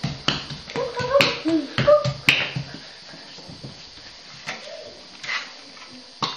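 Bare hands slapping on a tiled floor as a child crawls: a run of sharp slaps in the first two and a half seconds, mixed with a few brief vocal squeaks, then only a few faint taps.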